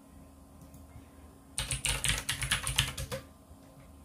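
Typing on a computer keyboard: a quick run of keystrokes lasting about a second and a half, starting a little over a second and a half in.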